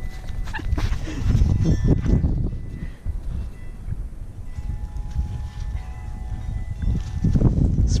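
Siberian husky puppy vocalising while playing, over a steady low rumble of handling noise on the microphone.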